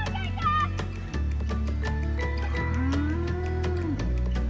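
Background music with a steady beat and bass, over which a cow moos once in the second half, one long low call that rises, holds and falls away.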